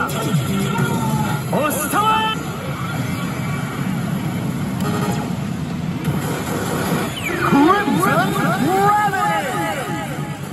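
Pachislot machine game audio during a reel effect animation: music and short voice clips, then a dense run of rising and falling swooping sound effects from about seven seconds in.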